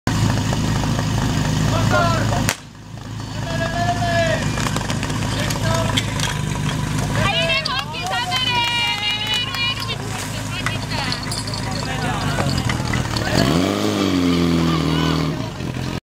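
Portable fire-pump engine running, cut through by a single loud sharp crack, the start signal, about two and a half seconds in. Then a crowd shouting and cheering. Near the end the pump engine revs up, rising in pitch and then holding high.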